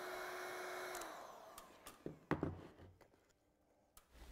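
Electric heat gun blowing hot air over bitumen shingle lap joints, switched off about a second in, its fan winding down with a falling hum. A few light knocks follow.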